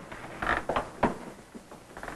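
A few short scraping sounds about half a second in, then a sharp click about a second in, in a pause between lines of dialogue.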